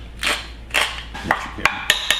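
Hand pepper mill grinding black pepper in two short twists, then a metal utensil knocking about five times against a stainless steel mixing bowl, each knock ringing briefly.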